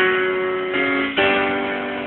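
Piano keyboard playing held chords of a slow worship-song progression, here on F-sharp minor. The notes shift about three-quarters of a second in, and a new chord is struck just over a second in.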